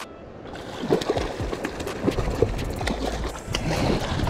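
A big hooked fish thrashing at the surface beside a boat, water splashing and sloshing in short irregular bursts as it is brought to the landing net.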